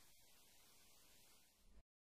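Near silence: a faint, even hiss that cuts off to complete silence shortly before the end.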